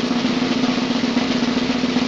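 A sustained snare drum roll sound effect, steady and unbroken, the suspense roll played just before the winner of a contest is announced.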